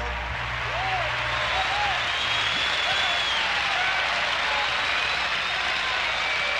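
Audience applauding and cheering, with scattered shouted voices over the steady clapping.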